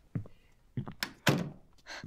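A few sudden knocks and thunks in quick succession, the loudest about a second and a quarter in.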